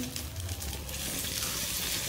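Rice and diced tomato frying in oil in an enamel pan over a gas burner, sizzling steadily.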